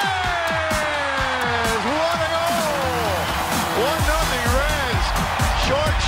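Background music with a singing voice gliding through long notes; a heavier bass line comes in about four seconds in.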